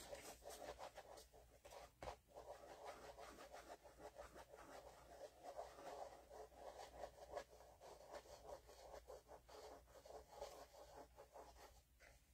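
Fingertips rubbing wet paper on a gel-medium image transfer, a faint, irregular scratchy scrubbing as the soaked paper layer is rubbed away to reveal the print underneath.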